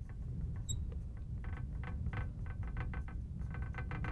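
Marker writing on a glass lightboard: a quick, uneven run of faint squeaks and taps as the tip moves across the glass letter by letter, over a low room hum.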